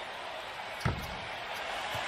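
Steady arena court ambience with a single thud of a basketball on the hardwood court a little under a second in.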